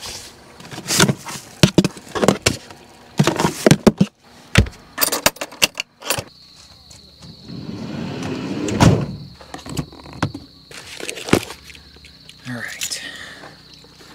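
Clatter of food containers and camp-cooking gear being handled: a quick run of clicks and knocks, then more scattered ones. Through the second half, crickets chirp in one steady high note.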